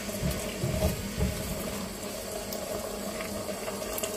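Mixed berry sauce bubbling at a boil in a stainless steel saucepan while a silicone spatula stirs it, with a few low thumps in the first second and a half.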